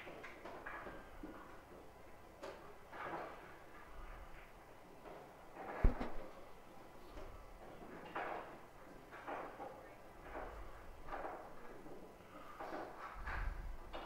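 Scattered soft knocks and clicks over a faint murmur, with one sharp knock about six seconds in as the loudest sound and a duller thump near the end.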